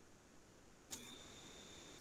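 Near silence: faint room tone, with a faint steady high-pitched whine coming in about a second in.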